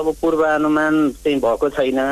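Speech only: a voice speaking Nepali in a radio news report.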